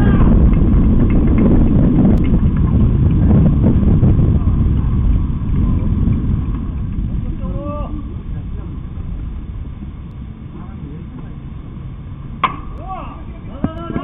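A baseball bat strikes a pitched ball with one sharp crack near the end, followed by players' shouts from the field. Before that, a low rumbling noise fades over the first half, and there is a brief distant shout in the middle.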